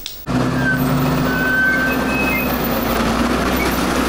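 Wheel loader's diesel engine running steadily under load as it works its bucket, with a few brief high squeaks over the engine.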